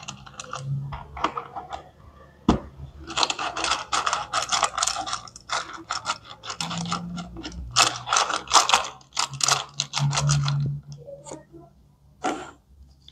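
Plastic toy washing machine being worked by hand: rapid plastic clicking and rattling from its mechanism and the plastic clothes pegs in its drum, scattered at first and turning into a dense run from about three seconds in until near the end.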